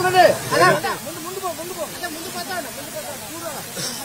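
Short voice-like sounds, each rising and falling in pitch, repeated one after another over a steady hiss, louder in the first second and softer after.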